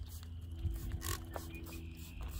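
A trigger spray bottle gives one short, hissing spritz of waterless wash onto car paint about a second in, over a low steady rumble.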